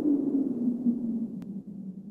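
Intro sound effect: a low droning hum that slowly fades, with a single faint click about one and a half seconds in.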